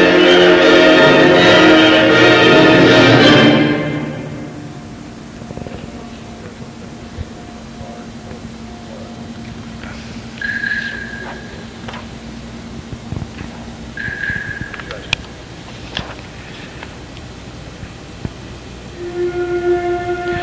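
School wind ensemble playing loud full chords that cut off about three and a half seconds in, followed by a soft passage: a long low held note with a couple of short high notes over it. Near the end the flutes enter on a low-register F, an attack the adjudicator wants rounder, with more air.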